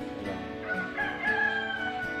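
A rooster crowing: one long call starting under a second in, sliding gently down in pitch, over background music.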